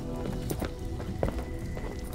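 Footsteps on a hard floor, a few irregular knocks, the loudest about a second and a quarter in, over steady background music.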